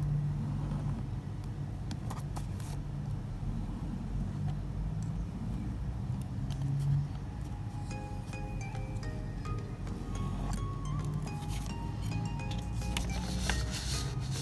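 Soft background music, with faint clinks of a metal ring being handled and the scratch of a pen marking around it on paper.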